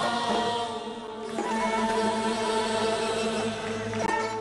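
Concert music with voices holding long notes over a steady low drone; the notes shift to a new chord about a second and a half in.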